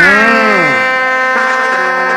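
Synthesizer keyboard sounding a chord that starts suddenly, bends down in pitch over about half a second, then holds steady.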